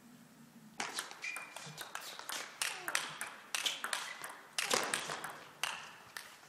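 Table tennis rally: the celluloid-type ball clicking sharply off the rackets and the table in a quick, even back-and-forth of strikes and bounces.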